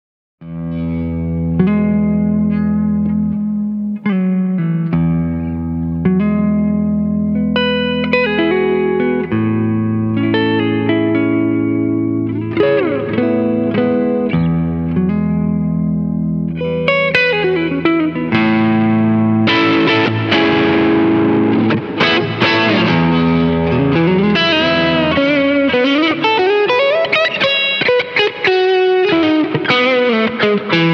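Electric guitar with McNelly Stagger Swagger humbucking pickups, played through a Kemper amp profiling a Silverface Princeton. It rings out in sustained chords and notes whose pitch wavers and bends, and turns brighter and more overdriven about twenty seconds in.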